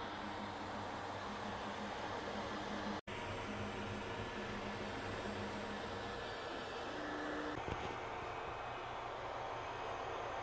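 Longer LK5 Pro FDM 3D printer running a print: a steady whir from its cooling fans, with stepper-motor tones that start and stop as the print head and bed move. The sound cuts out for an instant about three seconds in.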